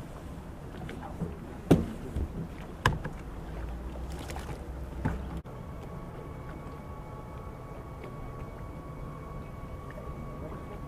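Two sharp knocks in a fishing boat about two and three seconds in, then a boat motor running steadily with a low hum and a thin, fixed whine.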